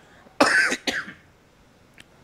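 A man coughs: one loud cough about half a second in, then a smaller one just after.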